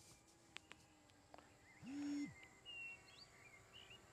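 Near silence outdoors with faint birds chirping a few times in the middle, a few faint clicks early on, and one brief low hum lasting under half a second about two seconds in.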